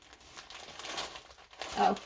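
Clear plastic film over a diamond painting canvas crinkling as the canvas is handled, in soft, irregular rustles.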